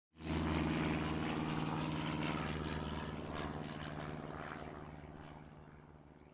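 A steady engine drone with a hiss over it. It starts abruptly and then slowly fades away.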